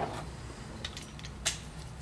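A few faint metallic clicks, then one sharper click about one and a half seconds in, from a steel spark plug socket being handled.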